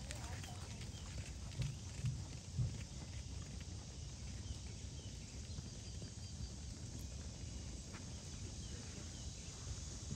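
Horse hoofbeats on a sand arena: three dull thuds about half a second apart from a horse passing close, over a steady low background noise.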